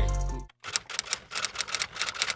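Music fades out in the first half second, then a rapid, even run of typewriter key clicks, about eight a second, a typing sound effect.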